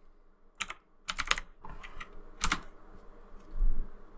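Computer keyboard keys tapped a handful of times as a search word is finished and entered, followed near the end by a dull low thump.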